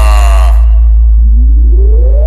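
Electronic sound-check bass: a loud, sustained deep sub-bass tone holds throughout. A falling synth tone over it fades out about half a second in, and a little after a second a single rising sweep tone starts and climbs steadily.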